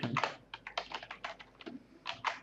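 Typing on a computer keyboard: a quick run of key clicks as a command is typed.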